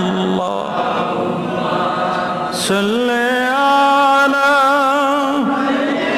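A man's voice chanting a sermon in a long melodic line, amplified through a microphone. After a brief break, it holds one long note for about three seconds in the second half.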